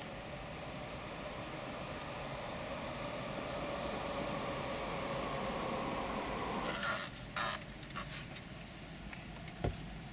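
Steady noise of a vehicle going past outside, slowly growing louder, then cutting off suddenly about seven seconds in. After that come a few light plastic clicks and knocks as the radio head unit is handled, with one sharper click near the end.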